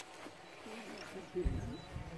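Faint voices of people talking in the background, with one brief low thump about one and a half seconds in.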